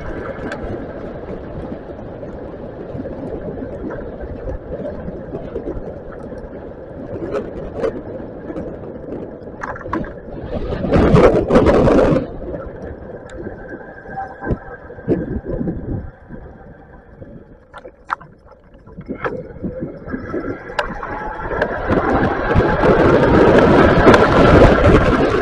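Riding noise from an e-bike on wet pavement: wind on the microphone and tyre hiss with scattered small knocks. The noise swells loudly about eleven seconds in, drops off for a few seconds after the middle, then builds to its loudest near the end.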